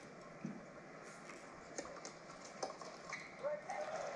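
Scattered light clicks and taps of tennis string and a stringing-machine clamp being handled while a knot is tied off.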